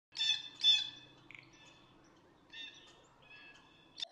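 Bird calls: two louder calls in quick succession at the start, then a few fainter calls.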